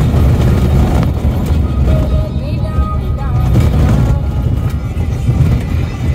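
Steady low rumble of a Chevrolet ZR2 driving over a gravel track, heard from inside the cab, with music playing over it.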